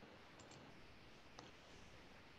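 Near silence with faint computer clicks: a quick double click about half a second in and another click later, as the presentation slide is advanced.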